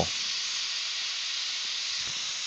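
A steady, even hiss with no other distinct sound.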